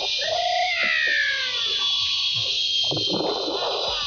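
Zipline trolley running along the steel cable, its pulley giving a steady high whir. Over it, a few sliding cries rise and fall in pitch during the first second and a half, and a short rushing burst comes about three seconds in.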